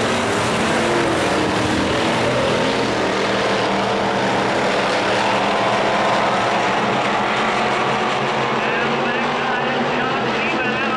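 Engines of several vintage dirt-track stock cars running at racing speed around the oval, a steady blended engine sound. Voices come in near the end.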